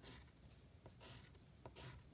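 Pencil lead drawing on paper: a few short, faint strokes as cross lines are added to a sketched shape.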